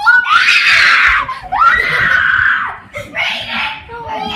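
Children screaming with excitement: three long, high screams, the last one shorter.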